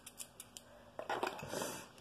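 Yellow plastic children's scissors clicking open and shut a few times, followed about a second in by a louder rustle of handling.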